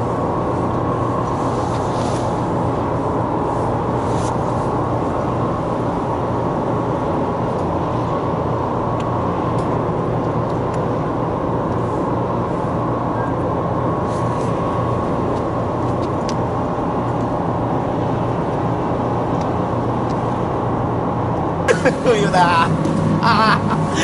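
A steady low mechanical drone with a few constant hum tones, unchanging in level throughout. A voice comes in near the end.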